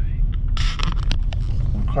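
Low steady rumble of a car's engine and tyres heard inside the cabin. About half a second in comes a burst of rustling with a few sharp clicks, lasting under a second, as the handheld camera is turned around.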